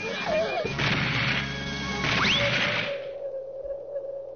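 Cartoon sound effects: a noisy whooshing rush with a quick upward whistle glide about two seconds in, then one long held tone.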